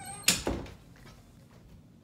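Two short thumps close together near the start, then faint room tone.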